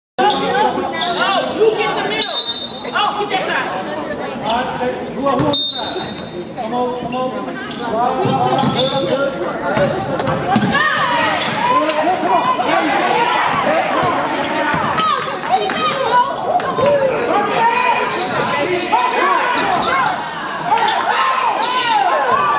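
Live basketball play on a hardwood gym floor: the ball being dribbled and bounced, with many short squeaks and players and spectators calling out, all echoing in the gym.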